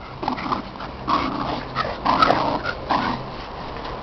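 Dogs growling in short bursts in play while pulling against each other on a rope tug toy.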